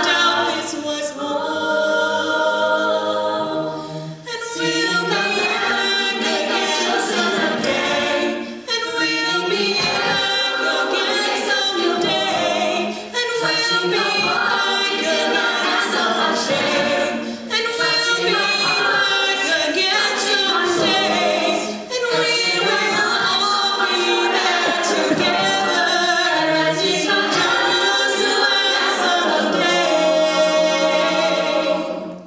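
Mixed-voice a cappella group singing without instruments, a female soloist on a microphone leading over the choir's backing vocals. The singing runs on in phrases, with short breaks between them every four to five seconds.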